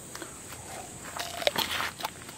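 A person biting into a raw green mango: a short burst of crisp crunching and clicks in the second half.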